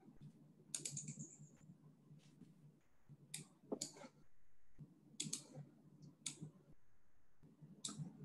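Sparse clicking from working a computer: about six sharp, separate clicks spaced a second or so apart, over a faint low hum.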